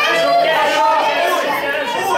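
Overlapping voices of a small crowd chattering and calling out in a large room.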